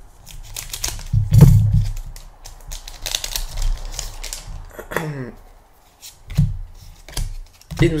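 Scissors snipping open foil Pokémon booster-pack wrappers, with crinkling of the wrappers and sharp clicks from handling the packs; the crinkling is densest about three to four seconds in.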